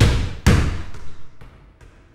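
Two loud, heavy thuds about half a second apart, the second the strongest and ringing out for about a second before dying away.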